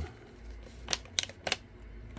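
Three or four light, sharp clicks about a third of a second apart, about a second in, from a plastic blister pack of miniature figures being picked up and handled, over a low steady hum.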